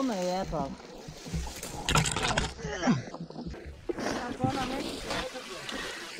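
Short bursts of voices talking and calling out, with splashing and scuffing in shallow muddy water between them.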